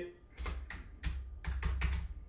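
Computer keyboard keys being typed: about half a dozen separate key clicks, with dull knocks through the desk under them.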